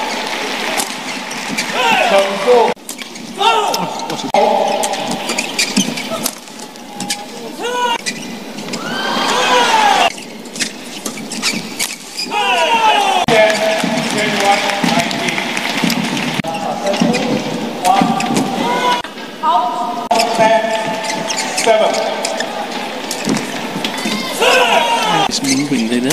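Badminton doubles rallies: rackets hitting the shuttlecock in sharp clicks and court shoes squeaking on the mat in short falling squeals, over the voices and shouts of an arena crowd.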